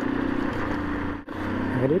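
A vehicle driving on a gravel road: the engine running at a steady pitch, with tyre and road noise. The sound drops out briefly just past a second in.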